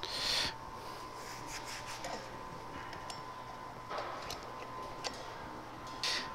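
Quiet shop background with a thin steady high hum. A short rustle comes at the start, then a few light clicks as the motorcycle wheel is handled on the balancer's metal axle.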